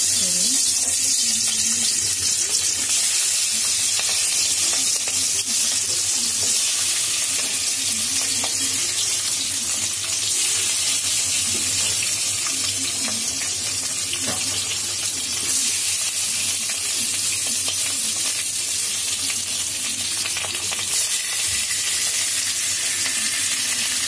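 Turmeric-and-salt-marinated tangra fish frying in hot oil in a metal kadai, a steady loud sizzle.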